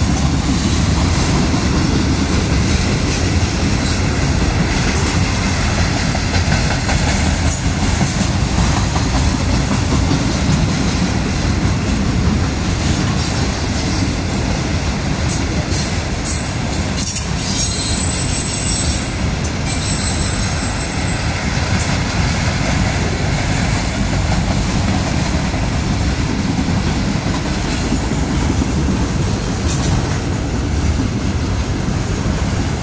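Freight train of autorack cars rolling past at speed: a steady rumble of steel wheels on rail with clickety-clack over the rail joints. A brief high-pitched wheel squeal comes about midway.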